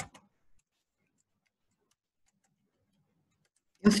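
Computer keyboard keystrokes: a couple of sharp clicks at the start, then a few very faint taps in an otherwise near-silent stretch.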